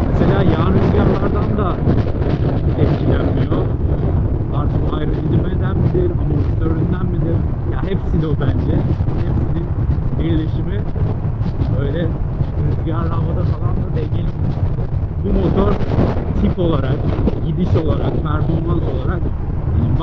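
Steady, heavy wind noise buffeting the microphone of a motorcycle ridden at highway speed, with a muffled voice talking at the start and again from about 15 seconds in.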